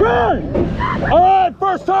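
Riders' voices and shouts over the low rumble of the Griffon dive coaster's train rolling out onto the edge of the drop. The rumble stops about one and a half seconds in as the train halts at the holding brake over the drop.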